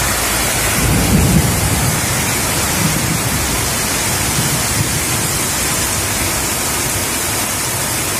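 Heavy rain pouring steadily onto a road, a loud even hiss, with a low rumble about a second in.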